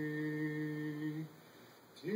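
Recorded hymn singing: voices hold one long, steady note that stops about a second and a quarter in, leaving a brief quiet gap before the next phrase.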